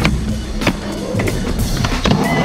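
Skateboard grinding along the top of a skate-park ledge box, with two sharp clacks of the board, over background music.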